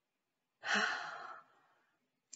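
A woman sighs once: a short exhaled breath starting about half a second in and trailing off within a second.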